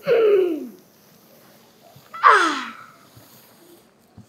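Two short vocal sounds from a young, high voice, each gliding down in pitch: one right at the start and another about two seconds later, like drawn-out gasps or 'ooh's rather than words.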